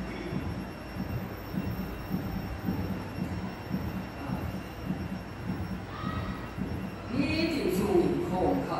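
A man preaching in a church, his voice muffled and echoing through the PA system over a low rumble, becoming clearer near the end.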